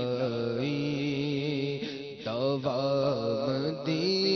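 A man sings an Islamic devotional poem (kalam) solo into a microphone, unaccompanied, holding long ornamented notes that waver in pitch. There is a brief break for breath about two seconds in.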